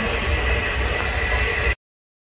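Steady background noise of a busy roadside food stall: an even hiss over a low rumble, with no voices. It cuts off abruptly to silence near the end.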